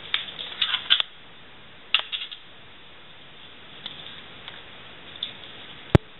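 Light clicks and scrapes of handling at a dissection tray, clustered in the first second and again about two seconds in, with a few fainter ones later. A single sharp click just before the end is the loudest sound.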